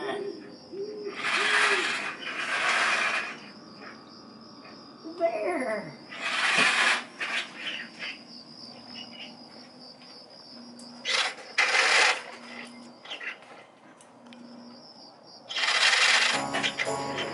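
An animatronic witch's recorded cackle opens, then gives way to a spooky Halloween sound-effect track: several loud hissing bursts and a falling cry over a faint, steady, high pulsing tone.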